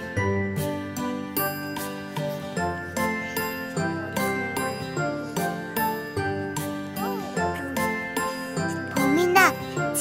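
Light background music for children, with bell-like tinkling notes over a steady beat. A child's voice comes in briefly near the end.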